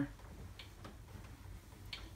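Faint rubbing of a damp microfiber cloth wiped over a flat-screen TV's screen, with a few faint, sharp ticks and a low steady room hum.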